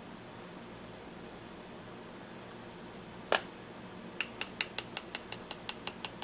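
A 20-gauge shotshell hull holding two lead balls and granular buffer being shaken to settle the buffer around the balls. There is one click about three seconds in, then a run of quick light clicks, about six a second, over a faint steady room hum.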